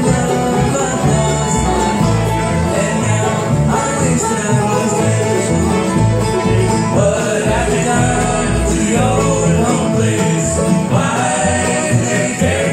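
Live acoustic bluegrass band playing at full volume: banjo, acoustic guitars, fiddle and upright bass over a steady beat.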